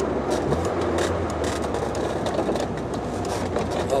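Mercedes engine and road noise heard from inside the cabin while driving, with its ignition timing freshly readjusted. The engine's low hum is steady, then eases off in the second half as the car slows.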